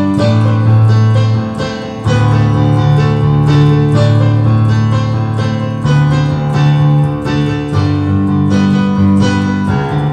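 Electronic keyboard on a piano sound, playing an instrumental passage: notes struck repeatedly over held low chords, with the bass chord changing every few seconds.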